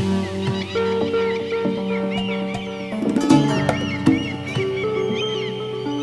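Organic deep house track in a drumless breakdown: held synth chords and a bass line, with short bird chirps laid over them.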